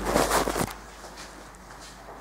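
Rustling and scraping handling noise as a camera is moved, with clothing brushing against the microphone. It stops abruptly under a second in, leaving quiet room tone with a couple of faint clicks.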